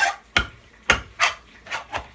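A kitchen knife stabbing into the lid of a tin can to force it open, in place of a broken can opener: a series of sharp strikes, about two to three a second.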